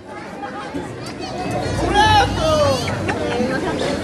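Audience chatter, with several high children's voices talking over one another and growing louder about two seconds in.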